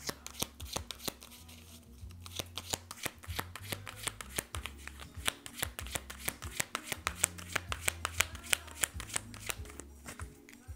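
A deck of tarot cards being shuffled by hand, overhand from one hand into the other, with a quick, uneven run of sharp snaps as the cards slap and slide against each other.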